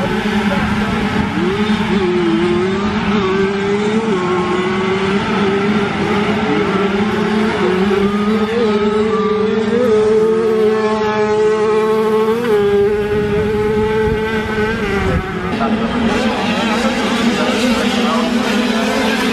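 A pack of classic 50cc two-stroke motocross bikes racing together, their engines giving a loud, steady high-revving drone. Individual engines glide up and down in pitch as riders work the throttle and shift, and one engine climbs more clearly about twelve seconds in.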